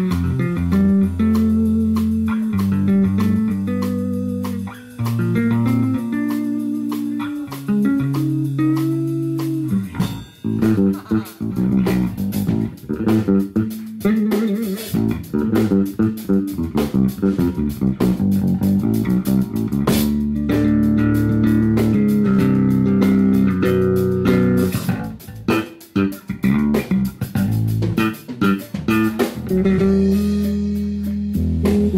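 Live blues band playing an instrumental passage: guitar and bass guitar over a drum kit, with no singing.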